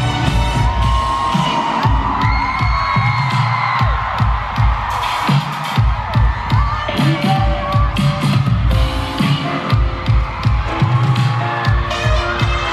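Live pop band playing through arena speakers with a thumping beat, under loud screaming and cheering from a large crowd.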